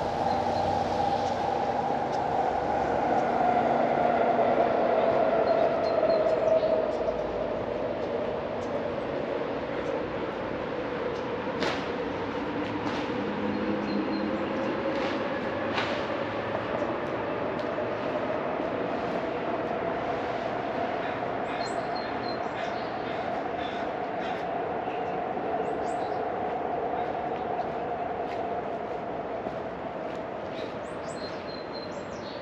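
A steady machine whine that drifts slowly down in pitch and then back up again, with two sharp knocks about midway.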